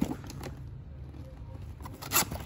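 A sharp tap and a few light knocks of a hand handling a cardboard product box, then a low steady background hum.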